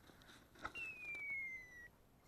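A single thin whistle-like note, falling slowly in pitch over about a second, just after a short click.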